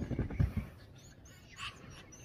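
A dog giving a single short yip about a second and a half in, after a few low thumps near the start.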